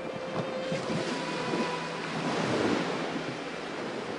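Sea waves breaking and washing up on a sandy beach, the surf swelling to its loudest a little past the middle, with some wind on the microphone.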